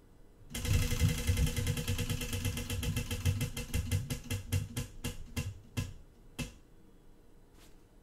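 Tabletop prize wheel spinning, its pointer clicking rapidly against the pegs; the clicks slow steadily and stop a few seconds later as the wheel comes to rest.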